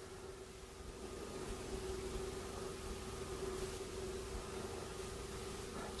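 Quiet room tone: faint background noise with a thin, steady hum.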